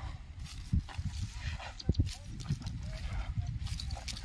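Outdoor field sound: a steady low rumble, most likely wind on the microphone, with scattered thuds, the strongest about a second in and again near the middle, and faint voices in the background.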